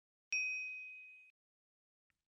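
A single high, bell-like ding chime sound effect, struck once about a third of a second in and fading away over about a second, marking a chapter title transition.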